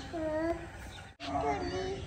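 A small child's voice making a soft, drawn-out vocal sound rather than clear words. It breaks off suddenly about a second in and is followed by another short vocal sound.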